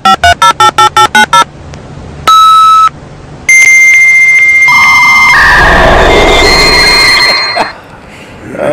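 Loud electronic beeps: a quick run of about eight short beeps in the first second and a half, one longer beep a little after two seconds, then a long electronic tone from about three and a half seconds that steps between pitches and fades out near the end.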